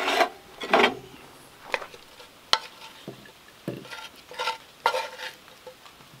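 A wooden spatula scraping food out of a cast iron skillet onto a plate, in a series of separate scrapes and knocks. There is a sharp click about two and a half seconds in, and a couple of short ringing clinks of the pan against the plate near the end.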